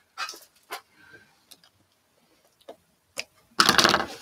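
A few scattered soft rustles and light clicks from quilt fabric and batting being shifted by hand under a domestic sewing machine's presser foot, with no steady stitching run. A voice starts near the end.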